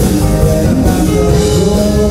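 Live funk band playing: drum kit, electric bass and electric guitars over a steady groove, with held notes sounding above.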